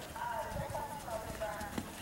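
A horse's hoofbeats on soft arena dirt at a walk or trot, with a few sharper knocks, under faint voices talking nearby.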